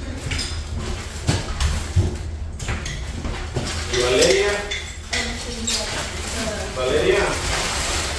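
Indistinct conversation at a family meal, with clinks and knocks of dishes and cutlery; a couple of sharp knocks come in the first two seconds and voices rise around the middle and near the end.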